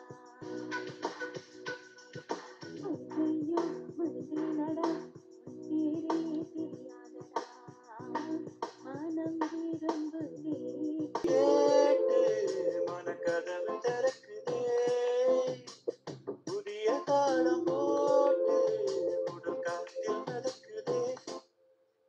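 Classic Indian film songs sung over a Zoom call, with the compressed sound of a video call: first a woman singing, then, after an abrupt cut about 11 seconds in, a man singing louder with long held notes. The singing stops just before the end.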